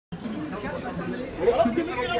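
Several voices talking over one another, a chatter of people, starting abruptly right at the beginning and growing louder about one and a half seconds in.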